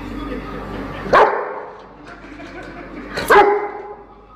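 A dog barking twice, about two seconds apart, each bark short and loud.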